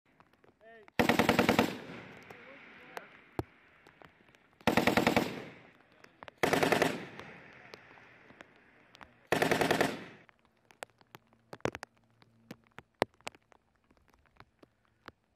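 M240B 7.62 mm belt-fed machine gun firing four short bursts, each a rapid string of shots lasting under a second and trailing off in an echo. The bursts come about a second in, near the fifth and seventh seconds, and just after the ninth.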